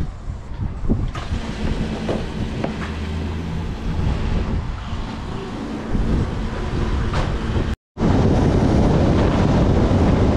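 Quad bike (ATV) engine idling with a steady low hum, getting louder as the quad pulls away about six seconds in. After a brief silent cut near eight seconds, the quad is riding along a road, its engine under loud wind noise on the microphone.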